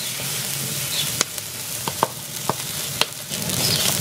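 T-bone steak sizzling on a grill grate over an open wood fire, which crackles underneath with about five sharp pops between one and three seconds in.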